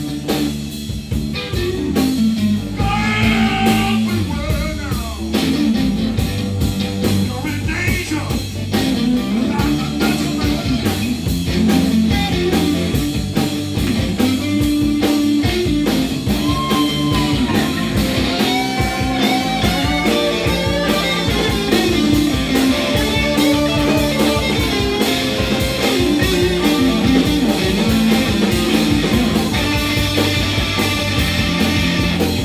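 Live blues band playing loudly: electric guitars over bass and a drum kit, with gliding slide-guitar notes a few seconds in.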